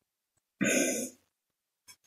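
A man clearing his throat once, a loud rasp lasting about half a second, starting about half a second in.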